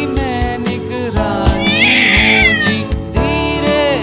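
Nursery-rhyme backing music with a cartoon cat's meow sound effect: one long meow, rising then falling, about halfway through.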